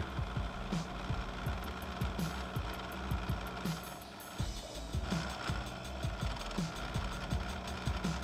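Milling machine's end mill cutting into a metal mold, a steady mechanical sound under background music with a regular beat.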